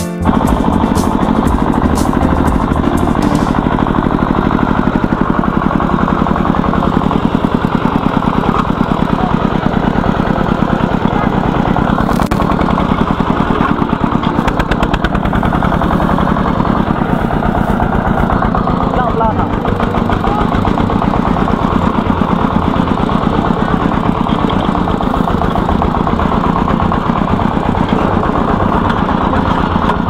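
Single-cylinder diesel engine of a Vietnamese công nông two-wheel-tractor cart idling steadily, a fast even chugging that does not change pace.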